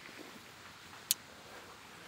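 Quiet outdoor street ambience, a faint steady hiss, with one short sharp click about a second in.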